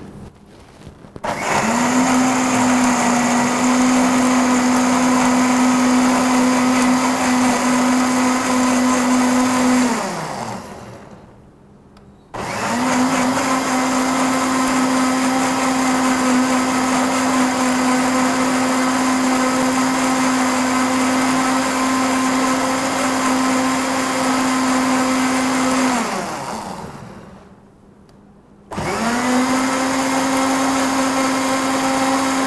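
Electric countertop blender running as it blends a pink fruit drink. It spins up, runs steadily for about nine seconds, winds down and stops, then runs again for about fourteen seconds, stops, and starts once more near the end.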